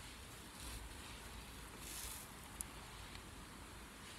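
Faint rustling of hands working thin snare wire around a bark-covered branch, with a soft rush of noise about two seconds in and a small click shortly after.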